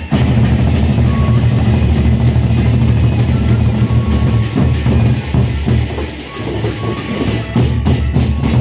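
Gendang beleq ensemble: several large Sasak barrel drums beaten with sticks in a fast, dense, driving rhythm, the deep drum tones filling the sound and dipping briefly about six seconds in before building again.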